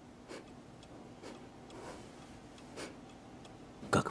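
Faint, slow ticking, roughly one tick a second, like a clock. Right at the end comes one sharp, much louder click.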